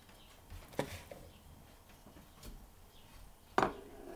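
A few light knocks of a small glass bowl against a plastic mixing bowl and the table top as flour is tipped in, the loudest near the end.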